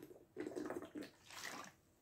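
A person drinking water from a plastic bottle: a few faint, short gulps with water moving in the bottle.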